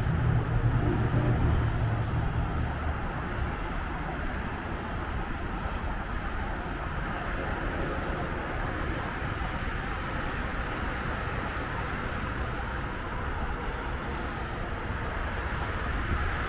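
Steady city road-traffic noise, with a vehicle engine's low hum louder for the first few seconds before it settles into an even background.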